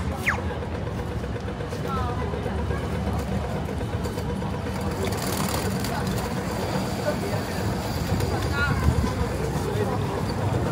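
Busy city street at a pedestrian crossing: steady traffic rumble and passers-by talking, with the crossing signal's falling electronic 'laser' chirp just after the start as the walk phase begins.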